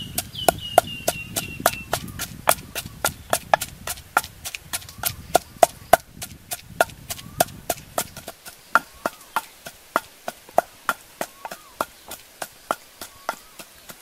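Wooden pestle pounding in a clay mortar, a steady run of sharp knocks at about three strokes a second as it grinds a paste.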